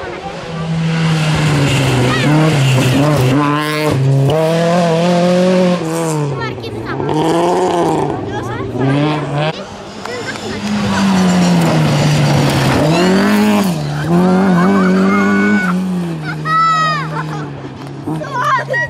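Rally car engine revving hard on a gravel stage, its pitch climbing and dropping again and again as the driver works through the gears and lifts for the bends. Near the end there are short high squeals from the car sliding.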